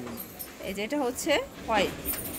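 Speech: a few short spoken sounds, with the word "white" near the end.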